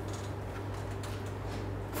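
Quiet room tone: a low, steady hum with faint hiss and no distinct sounds.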